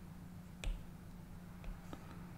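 Stylus tip tapping on a tablet's glass screen: one sharp tap about two-thirds of a second in, then two fainter taps near the end.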